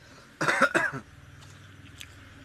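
A man coughing once, a loud half-second cough starting about half a second in.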